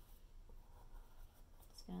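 Faint scratchy strokes of a paintbrush working acrylic and tempera paint over a textured canvas, over a low room hum.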